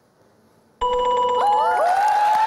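Hushed pause, then a game-show answer-board bell tone rings suddenly, signalling that the survey answer is on the board. Studio audience cheering rises over it about half a second later.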